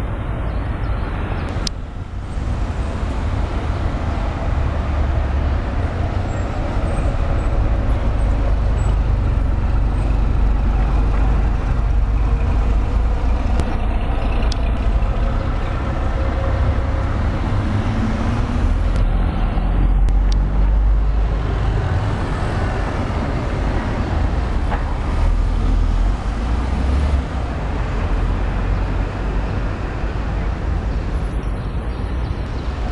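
Steady city street traffic: passing cars and heavier vehicles with a deep low rumble, growing a little louder through the middle.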